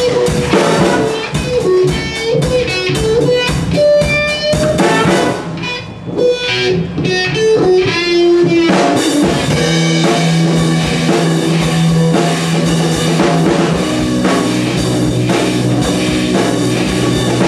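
Live band of trumpet, saxophone, electric guitar, electric bass and drum kit playing a blues-rock number, with a melodic lead line over the band. The sound thins briefly around six seconds, then the full band comes back in with sustained low notes about nine seconds in.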